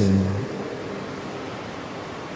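A man's spoken voice trails off in the first half-second, then only a steady, even background hiss of room tone remains.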